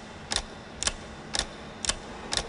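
A steady ticking sound effect, four sharp ticks evenly spaced about half a second apart, used as the pulse under a TV trailer.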